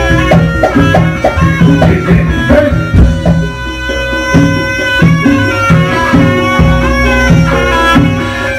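Live kuda kepang (jaranan) gamelan music: a shrill reed shawm plays a wavering melody over a held tone, with repeated low drum strokes and percussion beneath.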